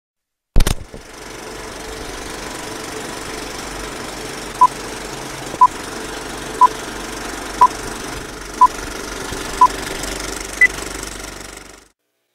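Film-leader countdown effect: a film projector running with a steady rattle after a loud pop at the start, and short beeps once a second, six at one pitch and a seventh at a higher pitch. The sound cuts off suddenly just before the end.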